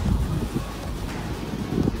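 Wind buffeting a phone's microphone: an uneven, low rumbling noise that rises and falls with the gusts.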